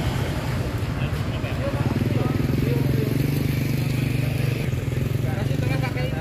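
A motor vehicle engine running steadily, its drone swelling between about two and five seconds in and easing near the end.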